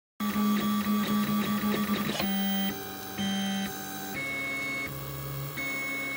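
3D printer's stepper motors whining as the print head and bed move through a print, a steady tone that jumps to a new pitch with each move. The moves are long for about the first two seconds, then change about every half second.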